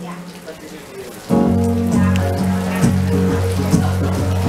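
Rain on a tent canopy, then about a second in a live band comes back in loudly, with a held bass line, sustained notes and a few sharp hits.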